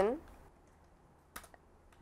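A computer keyboard keystroke: one short click about one and a half seconds in, after the tail of a spoken word.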